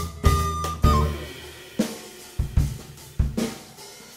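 Jazz-rock band of recorder, electric guitar, upright bass and drum kit: the recorder holds one high note over bass and drums for about the first second, then the drum kit plays a handful of sharp, spaced-out accents with short gaps between them.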